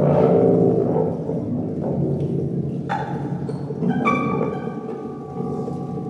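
Free improvised live music from a trumpet, guitar and percussion trio: a dense, sustained low drone. New sounds enter about three and four seconds in, the second bringing steady high held tones over it.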